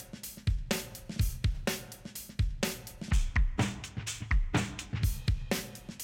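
Multitrack recording of an acoustic drum kit (kick, snare and cymbals) played back in a steady groove, with sharp strikes falling in an even pattern.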